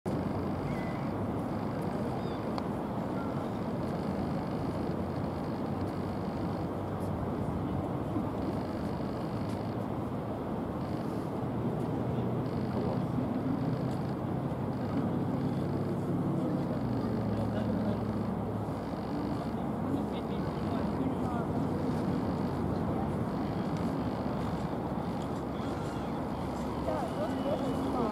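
Steady low outdoor rumble of engines, with one engine's hum swelling and fading in the middle.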